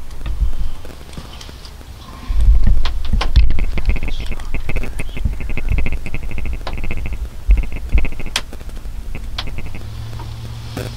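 Handling noise from a hand-held camera: low rumbling bumps and scattered clicks, loudest about two to four seconds in. A rapid run of high, evenly spaced ticks comes and goes through the middle.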